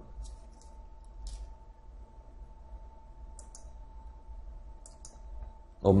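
Faint room tone with a steady low hum, broken by about four pairs of soft, light high-pitched clicks spread through the pause.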